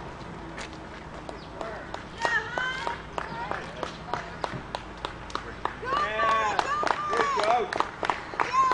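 Roadside spectators clapping and cheering for a passing runner: scattered hand claps, with high shouting voices joining about two seconds in and growing louder near the end.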